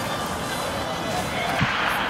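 Athletics stadium ambience: an indistinct, echoing public-address voice over crowd murmur, with a brief thump about one and a half seconds in.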